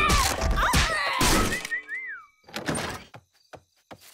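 Cartoon slapstick sound effects: a run of loud thuds and whacks for the first second and a half, a short tone that rises and falls, then a few soft knocks and clicks.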